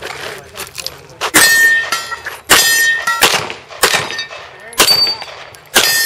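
Handgun fired about six times, roughly a second apart. Several shots are followed by a ringing clang from hit steel targets.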